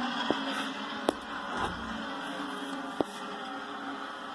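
Race broadcast sound of stock cars running on track, a steady drone heard through a television speaker in a small room. Three sharp clicks cut through it, about a third of a second, one second and three seconds in.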